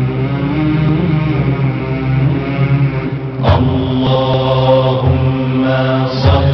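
Devotional chanting of the salawat (blessings on the Prophet Muhammad) in Arabic, the voice held on long, drawn-out notes. A short rising sweep comes about halfway through.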